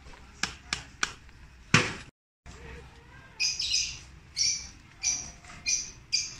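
Four sharp taps of a mallet striking a wood chisel as it carves bonsai deadwood. After a cut, a run of short, high chirps about every half second, like a small bird calling.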